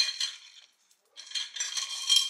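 A spoon stirring a drink in a glass, clinking rapidly against the glass. The clinking stops for about half a second near the middle, then starts again.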